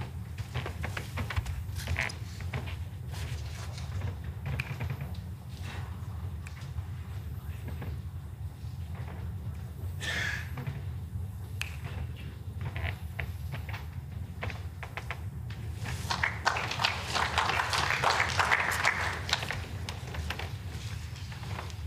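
Spectators clapping for a few seconds near the end as a lawn bowl comes to rest against another bowl by the jack. Beneath it runs a steady low hum from the indoor hall, with scattered faint knocks.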